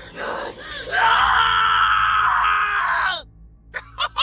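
A man's voice-acted scream of agony: short strained cries, then one long loud cry held for about two seconds that falls in pitch and breaks off about three seconds in.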